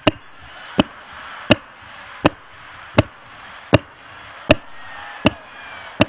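A row of evenly spaced hard knocks, about one every three-quarters of a second, from a handheld stage microphone being struck in time with a comedian's miming thrusts.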